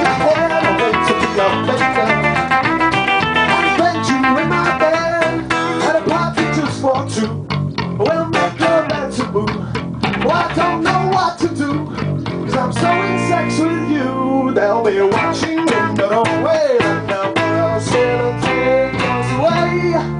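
Live band music: a strummed acoustic guitar backed by an electric bass guitar, playing steadily through an instrumental stretch of the song.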